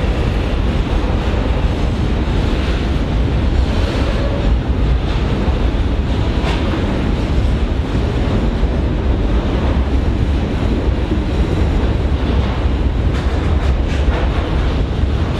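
Container wagons of a freight train rolling past: a steady rumble of steel wheels on the rails, with one brief sharp clank about six and a half seconds in.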